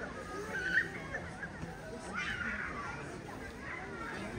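Indistinct background chatter of people's voices, some of them high-pitched, with two short bursts about half a second and two seconds in.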